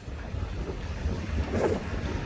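Low rumble of wind buffeting the microphone outdoors, with a brief laugh about one and a half seconds in.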